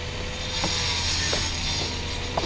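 Steady mechanical scraping noise with a low hum as a sewer inspection camera's push cable is pulled back through the pipe toward the clean-out, with a couple of faint ticks.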